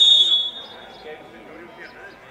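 Referee's whistle: one short, shrill blast of about half a second, signalling that the free kick may be taken, over low chatter from players and onlookers.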